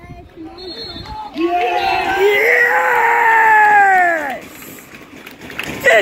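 A man's long drawn-out wordless cheer, held for about three seconds and sliding down in pitch as it ends, then a second, shorter yell near the end; a brief high thin tone sounds about half a second in.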